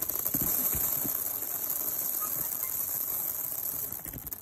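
Loose pearls clicking and rattling softly against each other as hands scoop and sift through a heap of them, over a steady high-pitched hiss.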